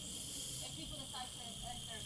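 Faint, muffled voices under a steady hiss, with a brief louder burst of hiss in the first moment.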